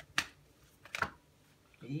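Deck of tarot cards being shuffled by hand: two sharp card clicks about a second apart.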